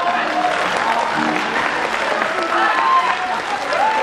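Audience applauding, with a voice heard over the clapping in places.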